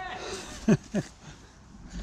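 A person's voice giving two short grunts that fall in pitch, about two-thirds of a second and a second in, over faint noise from a mountain bike on the trail.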